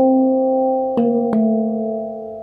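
Handpan tuned to a D minor (Kurd) scale ringing: two notes are struck about a second in, a third of a second apart, over the sustained ring of earlier notes. The notes are then left to ring and slowly fade.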